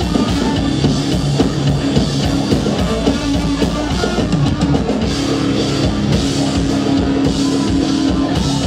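Rock band playing live: drum kit and electric guitars playing loud and dense, with a held note coming in about five seconds in.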